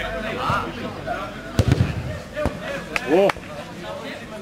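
Players' voices calling out across a sand football pitch, broken by a few sharp thumps a little past halfway, then one loud rising-and-falling shout near the end.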